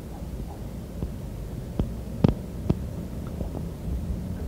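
Steady low hum and rumble from an old analogue recording, with three sharp clicks close together around the middle; the second click is the loudest.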